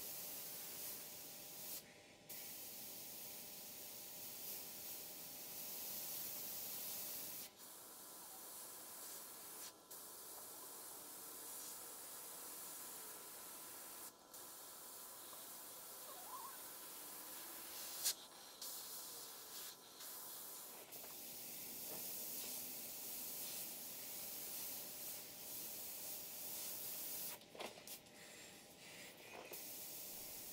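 GSI Creos PS.770 airbrush spraying paint, a soft, faint air hiss that breaks off briefly several times between passes. A single brief tap a little past halfway.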